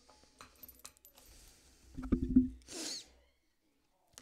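Cinnamon sticks dropped into a pot: faint handling clicks, then a quick clatter of knocks with a short ring about two seconds in, followed by a brief rustle.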